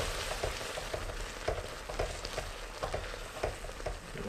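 Sauce sizzling and bubbling in a hot wok while a wooden spatula stirs it, a steady hiss with many small irregular clicks and scrapes.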